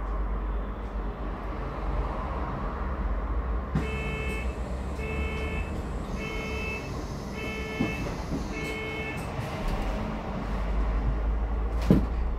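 Low steady running rumble of an ADL Enviro400H MMC hybrid double-decker bus. From about four seconds in, five identical electronic beeps sound at an even pace, a little over a second apart, and the rumble grows slightly louder near the end.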